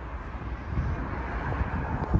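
Steady low rumble of outdoor background noise with no distinct events, growing slightly louder toward the end.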